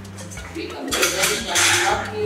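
A light clattering, clinking noise about a second in, over background music with a steady bass line.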